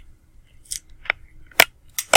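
A few short, sharp clicks, the loudest about three-quarters of the way through, typical of handling noise from a small object such as a presentation clicker or the microphone.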